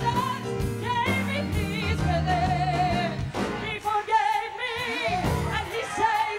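A woman sings a gospel worship song into a handheld microphone with a wide vibrato, over a band with bass and a steady drum beat and a choir behind her.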